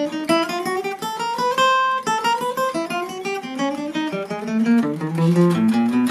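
Acoustic guitar playing a chromatic exercise in quick single picked notes. The run climbs steadily in pitch to a peak a little under two seconds in, then walks back down and ends on a held low note. The picking hand's inner thumb rests on the body and the strings to keep out unwanted string noise.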